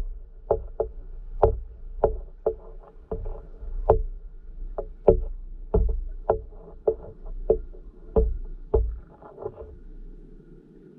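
Underwater recording: irregular sharp clicks and knocks, about two a second, over a low rumble of moving water. The clicks die away near the end.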